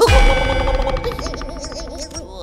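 A sudden loud bell-like hit with a low thud beneath it, ringing on and fading over about a second and a half, with a wavering tone rising and falling near the end: a cartoon sound effect or musical sting.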